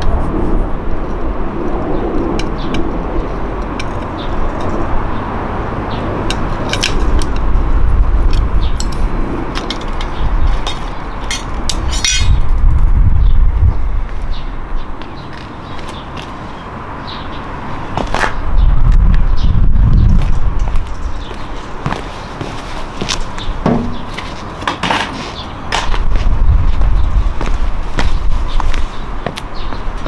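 Hand tools and small motorcycle parts being handled: scattered sharp clicks and light metallic clinks during work on the GN125H's headlight and meter. Under them a low rumble swells and fades three times.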